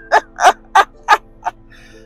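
A man laughing in a run of short bursts, about three a second, the last one weaker.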